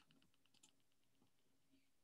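Near silence, with a few faint computer keyboard clicks as a key is pressed to turn an e-book page.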